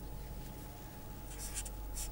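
Faint felt-tip marker strokes on paper, a few short strokes in the second half, over a steady low hum.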